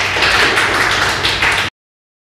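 Audience applauding, a dense patter of many hands, cut off suddenly near the end.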